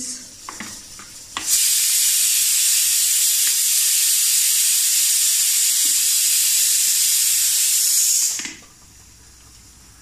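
A loud, steady hiss that starts abruptly about a second and a half in and cuts off just as suddenly about seven seconds later. A few faint clicks of a ladle against an aluminium pot come before it.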